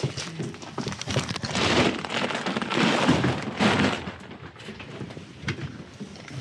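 Dry grain feed being scooped from a feed barrel and poured, a rattling hiss in a few bursts, loudest from about one and a half to four seconds in.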